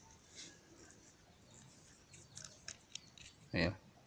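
Faint scattered clicks and small metallic scrapes of a machined aluminium hose connector and its fitting being handled and unscrewed by hand, with a cluster of clicks after about two seconds.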